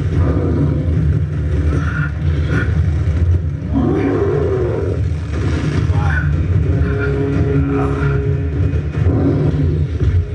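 Action-film fight soundtrack: a loud, steady low rumble of sound effects with voices over it.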